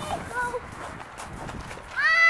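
Footsteps on a paved path, a run of irregular knocks, with faint voices in the background.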